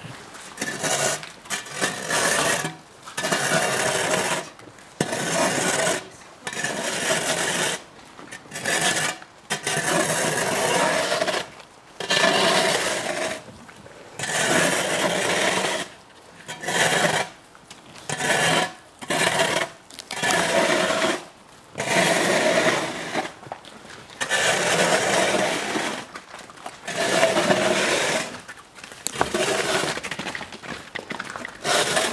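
Moose chewing and stripping pine branches close up, in repeated rasping, crunching bursts about a second long with short pauses between.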